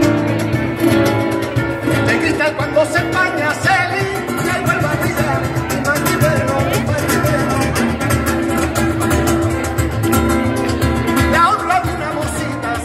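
Live flamenco: a man singing into a microphone over guitar accompaniment, with hand clapping (palmas) keeping the beat.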